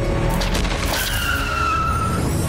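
Jeep tyres screeching under hard braking: one squeal that starts about a second in, sags slightly in pitch and lasts about a second, over dramatic background music.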